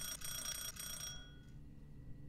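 Electric doorbell ringing once, a bright metallic ring lasting just over a second that stops abruptly.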